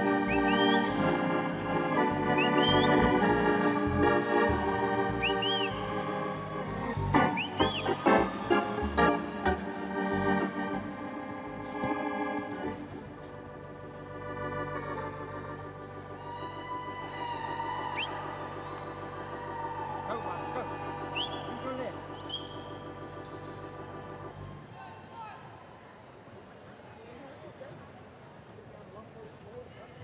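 Organ music, loud chords for about the first twelve seconds, then softer held chords that fade out near the end. Short rising whistles are heard over it in the first half.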